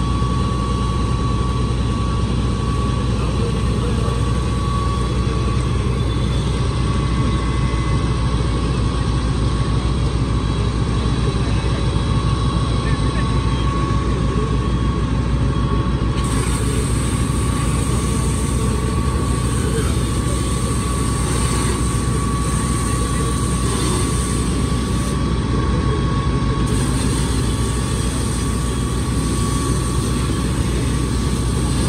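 A vehicle engine idling steadily: a constant low rumble with a thin, steady whine running over it.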